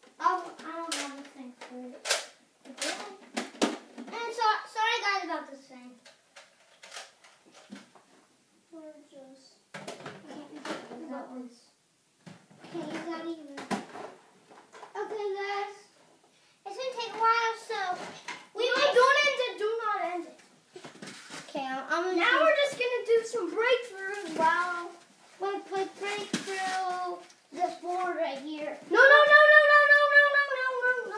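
Children's voices talking and calling out, too unclear for words. A few sharp clicks or knocks come in the first few seconds, and a long drawn-out call comes near the end.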